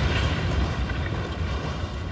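Loud, deep, continuous rumble left after a large blast, slowly fading.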